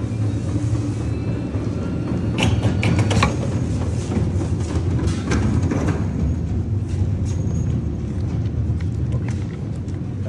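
Fabric air permeability tester's suction fan running with a steady low hum as it draws air through a calibration plate, building the test pressure to 100 Pa. A few brief clicks about three and five seconds in.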